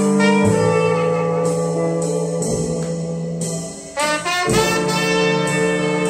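Slow jazz with brass horns holding sustained chords, played through a La Madame R4 wooden speaker. The horns fade briefly just before the four-second mark, then swell again.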